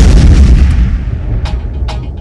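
A loud, deep boom hit that cuts off the music of a dance mix, its low rumble fading slowly over about two seconds. Sharp percussive hits of the next track begin about a second and a half in.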